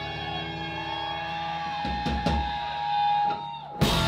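Live rock band playing: electric guitar holding a long note over drums, with heavy low drum hits about two seconds in and a sharp crash just before the end.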